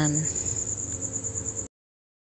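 A high, steady, rapidly pulsing insect trill in the background, with a voice trailing off at the start. All sound cuts off abruptly near the end.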